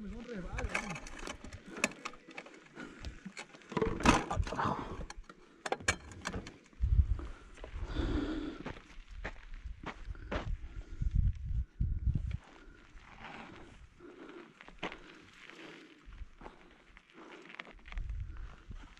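Mountain bike descending a rough dirt trail: irregular clattering and knocking from the bike going over bumps and loose ground, with low buffeting thumps of wind on the camera microphone.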